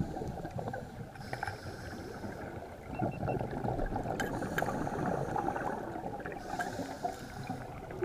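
Muffled underwater noise heard through a camera's underwater housing: a steady low rumble with scattered clicks and crackles, and two stretches of hiss about a second in and near the end.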